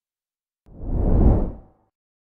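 Whoosh sound effect from a subscribe-button animation: one rush of noise that swells and fades, starting about two-thirds of a second in and lasting about a second.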